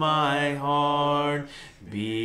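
A man singing a slow song solo and unaccompanied, holding long notes. One held note breaks off about one and a half seconds in, and a lower note begins just before the end.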